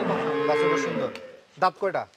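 A Friesian dairy cow mooing once: one long, steady call that fades out about a second and a half in. Two short calls follow near the end.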